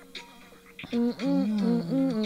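A woman humming a tune, starting about a second in, the pitch rising and falling smoothly.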